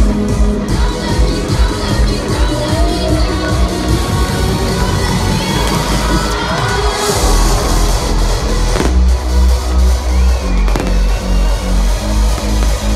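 Electronic dance music with a pounding bass beat, a crowd cheering over it, and the bangs of stage fireworks, with a couple of sharp cracks near the end.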